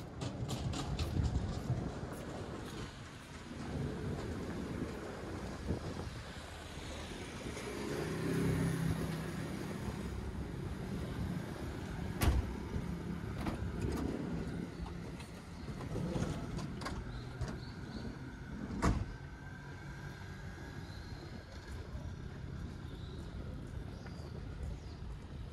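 Street ambience with a car engine running nearby, strongest about eight to ten seconds in. Two sharp clicks stand out, about twelve and nineteen seconds in.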